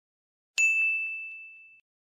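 A single bright ding sound effect that rings out high and clear, fading away over about a second. It strikes about half a second in.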